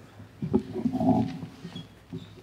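A congregation getting up from wooden pews: shuffling and rustling, with a short pitched creak in the middle that fades away before the end.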